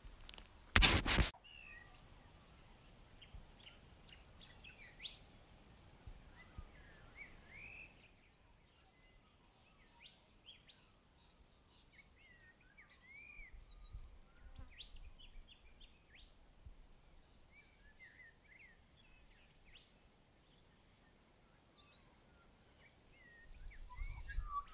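Faint outdoor birdsong: scattered chirps and short whistling, sweeping calls from several birds. A brief loud rush of noise about a second in.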